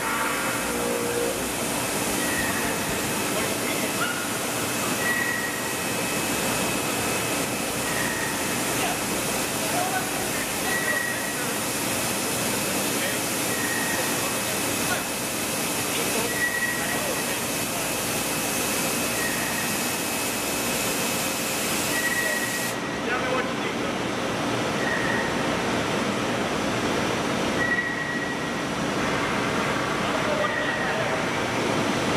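Steady running noise from a Mazak Megaturn vertical turning lathe, with a short high chirp repeating about every three seconds. A thin high tone and a hiss drop out about three-quarters of the way through.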